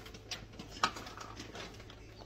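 Biting into and chewing a crisp sugar cookie crusted with coarse sugar crystals: a few short sharp crunches, the loudest a little under a second in.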